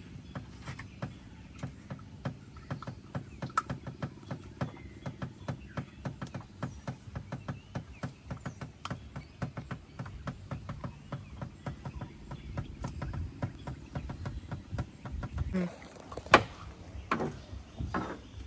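A quick, uneven run of small taps and knocks, a few a second, as a fish is worked out of a nylon gill net inside a wooden dugout canoe. A heavier, louder knock comes about sixteen seconds in.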